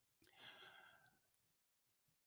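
Near silence, broken by a faint breath out, a sigh into the studio microphone, about half a second in.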